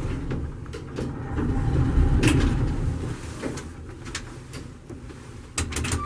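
Vintage R&O hydraulic elevator car travelling down with a low, steady rumble, then stopping and its door sliding open near the end, with a few clicks and knocks.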